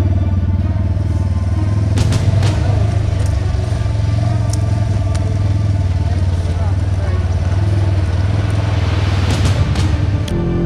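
Polaris RZR 900S side-by-side running along a trail, mixed with steady background music. A few sharp knocks and rattles come about two seconds in, again midway and near the end.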